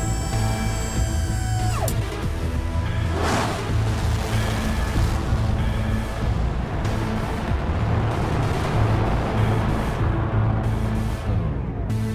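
Rocket-launch sound effect over dramatic music: an electronic power-up tone that drops away about two seconds in, a whoosh about a second later, then a low rumble under the music.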